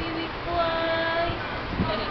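A high voice holding long, steady, singing-like notes, a lower note first and then a higher one held for most of a second. A soft knock comes near the end.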